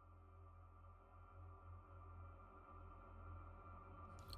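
Faint ambient music drone: steady held tones over a low hum, slowly swelling in level.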